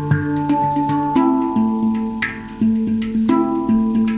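Handpan tuned to the D Kurd scale, played with the fingers: ringing, sustained notes that change every half second or so over a fast run of light taps.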